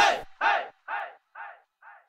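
A single short shout sent through a dub-style delay echo, repeating about twice a second and getting quieter with each repeat as it fades out.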